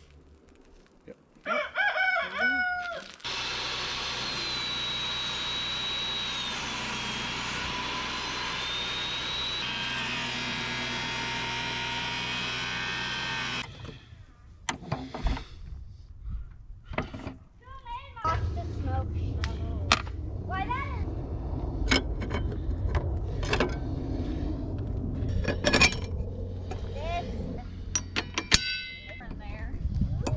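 Portable table saw running with a high whine for about ten seconds, the pitch sagging in the middle as it labours and fails to cut through waterlogged rough-cut two-by-six. After it stops come sharp metallic clicks and rattles as the saw blade is changed with a wrench, over a steady low hum.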